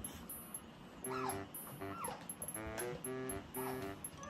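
Background music with a repeating melody, over which an Asian small-clawed otter gives three short, high squeaks that fall in pitch.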